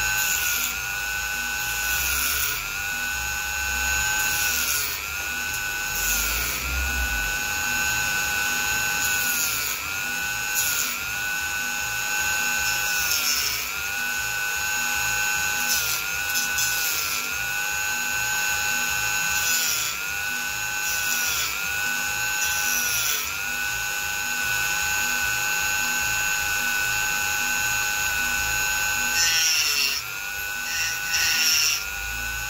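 Handheld rotary tool whining steadily at high speed as its bit cuts and smooths coconut shell, the pitch dipping briefly every second or two as the bit bites into the shell under load.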